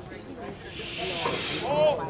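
A drawn-out hiss lasting about a second, followed near the end by a short shout from a voice.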